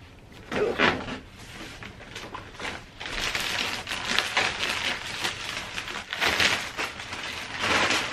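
Plastic wrap rustling and crinkling as the white metal frame pieces of an IKEA Algot unit are unwrapped and handled, with louder rustles about a second in, around six seconds in and near the end.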